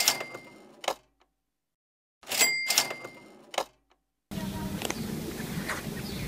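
A cash-register "ka-ching" sound effect, played twice: each time a rattle and a bell ding that fades over about a second, ending in a sharp click, with dead silence between. A steady outdoor background starts near the end.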